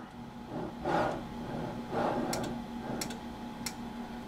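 Sharp clicks of the relays inside the wire flaw-tester's control box, about five in a little over a second, firing as the signal crosses the detection threshold; the relays trigger a marker for a defect in the drawn wire. Softer, duller sounds come before the clicks, over a faint steady electrical hum.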